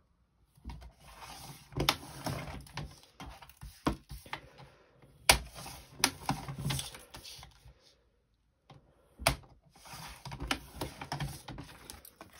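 Sliding paper trimmer cutting a laminated plastic pouch: several sharp clicks from the cutter head and plastic, with stretches of rustling and scraping in between and a brief pause about eight seconds in.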